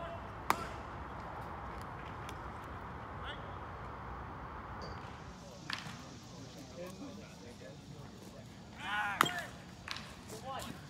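Sounds of a baseball game in play: a sharp pop of a baseball impact about half a second in, a smaller pop later, and a shout with a loud crack near the end.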